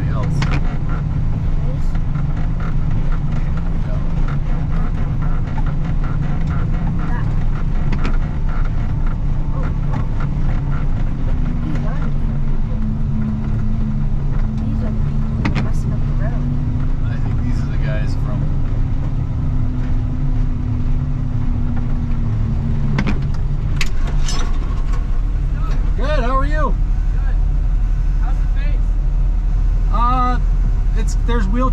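Engine of a snow-plow machine running steadily, with a continuous low drone. A higher, steady hum joins it for about ten seconds in the middle. Voices are heard near the end.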